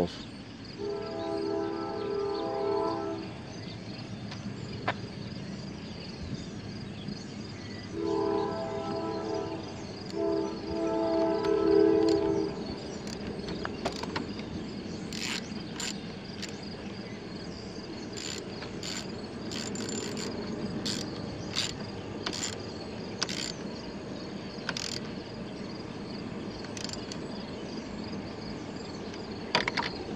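A train horn blows three chord-like blasts, about a second in, about eight seconds in and about ten seconds in, the last the longest and loudest. In the second half a socket ratchet clicks in short runs as the negative battery terminal clamp is tightened back onto the post. Insects buzz steadily throughout.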